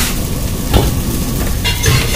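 Manchurian balls frying in hot oil in a steel wok, sizzling steadily as sauce is poured in, while a steel ladle stirs and knocks against the wok twice.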